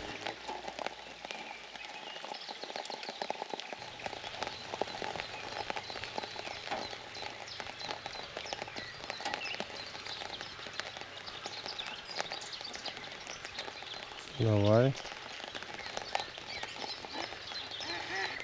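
Rain falling steadily on a pond's surface, a dense even patter of drops. About fourteen seconds in, a man's voice gives one brief exclamation.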